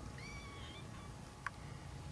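A faint, high-pitched mew from a three-week-old kitten in the first second, followed by a small click about one and a half seconds in.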